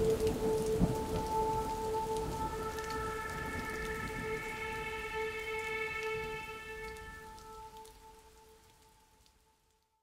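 Rain and falling drops with a long held note over it, the whole outro fading out steadily to silence near the end.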